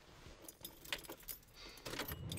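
Keys jangling, a run of small metallic chinks and clicks at irregular intervals, growing louder towards the end.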